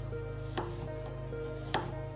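Kitchen knife chopping a chocolate bar on a cutting board: three sharp knocks of the blade against the board, about half a second to a second apart, over background music.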